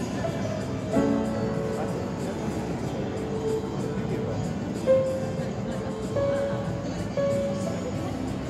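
Upright piano played slowly, with chords and held melody notes; fresh notes are struck about a second in, near five seconds and again near seven seconds.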